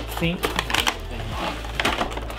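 Cardboard box and clear plastic blister tray handled as an action figure's tray is slid out of its packaging, giving an irregular run of small clicks and crinkles.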